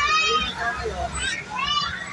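High-pitched children's voices calling out twice, once at the start and again near the end, over a steady low hum.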